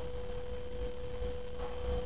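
A steady single-pitched tone, unchanging in pitch and level, over a low background rumble.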